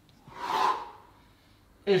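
A person's single forceful breath, lasting under a second, from the effort of pushing up from lying flat into a plank.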